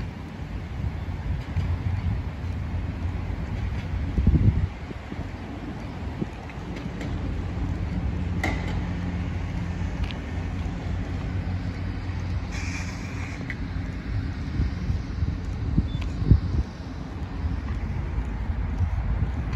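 Road traffic going by, with wind rumbling on the microphone and a louder low surge about four seconds in.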